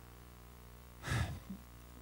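A person takes one audible breath into a microphone about a second in, a pause between phrases of a spoken question, over a faint steady room hum.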